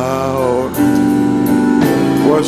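Live worship band music with keyboard, bass and acoustic guitar, under a singing voice that wavers early on and then holds long notes.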